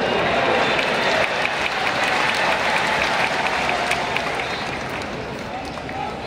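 Football supporters in a stadium stand clapping and chanting, a mass of hand claps over a wash of voices. It is loudest in the first couple of seconds and eases off toward the end.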